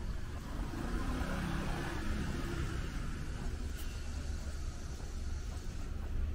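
Street ambience: a steady low rumble, with a vehicle going by in the first half.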